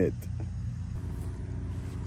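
A steady low hum with a few even tones at the bottom and no clear events, like a motor running at a distance.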